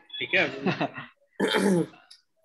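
A man says a brief word, then gives a short cough about a second and a half in.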